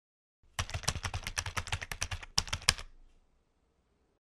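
Keyboard typing sound effect: a rapid run of keystrokes, about eight a second for roughly two seconds. It ends with two louder strokes after a brief pause.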